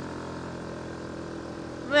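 Yamaha Warrior quad's single-cylinder engine running at a steady low speed while riding the dirt trail.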